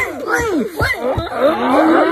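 A dense jumble of many overlapping voices at different pitches, each gliding up and down. It thickens about halfway through, with a long low drawn-out voice beneath the rest.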